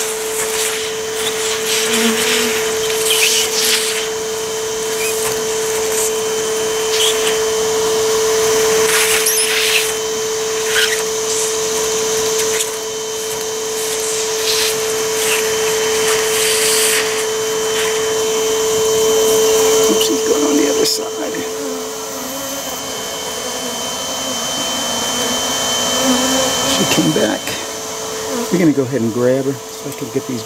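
Bee vacuum motor running with a steady whine as honeybees are sucked off a piece of comb through the hose, with short rushes of air at the nozzle. About two-thirds of the way through the whine drops in pitch, and it comes back up near the end.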